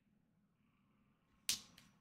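Near silence, then a sharp click about one and a half seconds in, with a fainter click just after it.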